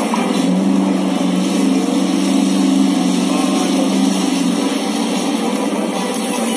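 Steady, engine-like drone from the projection dinner show's soundtrack, holding one low pitch for about five seconds, with the show's music under it.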